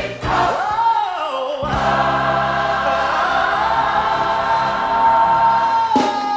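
Gospel mass choir singing. A lead voice slides up and back down, then from about two seconds in the full choir holds one long chord.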